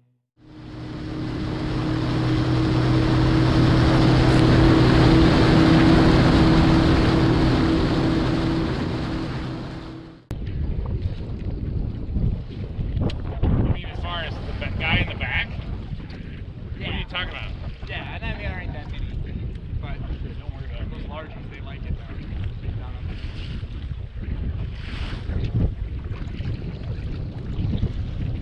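An intro sound effect: a rushing whoosh over a low drone swells up and fades out over about ten seconds. Then, after an abrupt cut, wind buffets the microphone and choppy water laps against a bass boat's hull.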